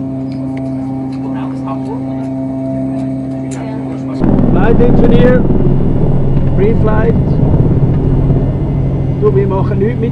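A steady mechanical hum made of several held tones. About four seconds in it gives way abruptly to a louder, denser rumble with voices talking over it.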